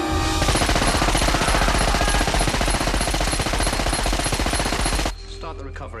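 Sustained machine-gun fire: a dense, continuous rattle of rapid shots lasting about five seconds, then cutting off suddenly.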